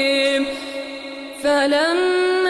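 A man's voice reciting the Quran in melodic tajweed: a long held note that fades away, then a new chanted phrase beginning about a second and a half in.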